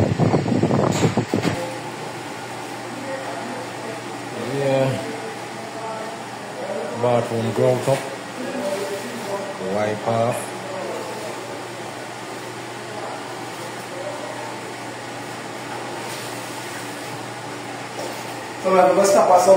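A steady low hum, like a fan running, with indistinct voices talking now and then in the background. A short burst of rumbling noise comes in the first second or so.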